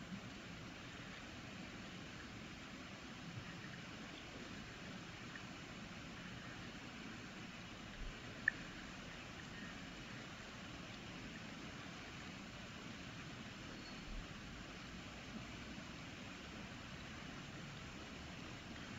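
Faint, steady hiss of room noise, broken by a few soft clicks, the sharpest about eight and a half seconds in.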